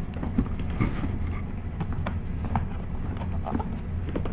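Cardboard product boxes being handled and shifted, giving scattered light knocks and scrapes over a steady low hum.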